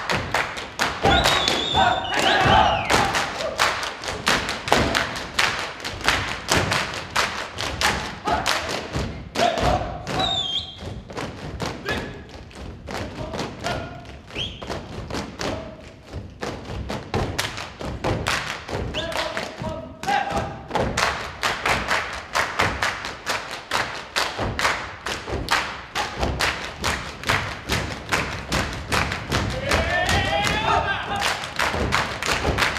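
Folk dancers stamping and striking their boots on a stage floor in a fast, even rhythm, with claps, over folk music. The stamping thins out briefly about halfway through, and short sung or shouted calls come in here and there.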